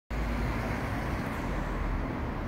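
Steady city street traffic noise, a low, even rumble with no single event standing out.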